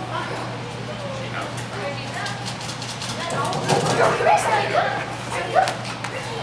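A dog barking several times in quick succession about halfway through, mixed with a person's whoop and laughter, over a steady low hum.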